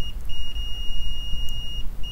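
Multimeter continuity buzzer giving a steady high beep for about a second and a half, breaking off briefly near the start and again near the end, over a low hum: the two probed points on the logic board are shorted together.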